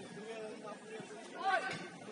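Faint, distant shouts and calls of footballers on the pitch over open-air background noise, with one faint knock about halfway through.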